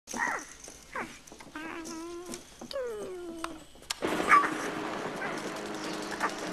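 A mogwai's high, cooing creature voice: short chirps, a wavering held note and a long falling call, with a questioning "TV?". About four seconds in, a television's film soundtrack switches on as a steady noisy bed with a sharp loud hit near its start.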